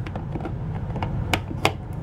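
Two sharp clicks about a third of a second apart, a little past halfway, as the tip of a long screwdriver finds and seats in the centre screw of a Dometic toilet's spring cartridge. A low steady hum runs underneath.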